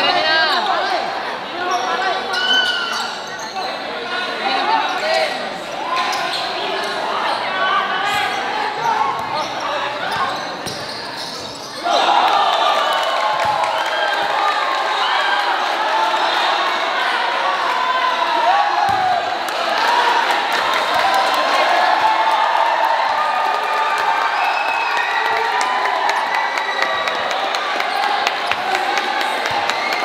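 Basketball bouncing on an indoor court under the chatter and shouts of a packed crowd of spectators. The crowd noise gets suddenly louder about twelve seconds in.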